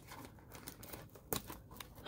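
Plastic shrink-wrap being pulled off a cardboard trading-card box after being slit with a knife: faint crinkling with a few sharp clicks in the second half.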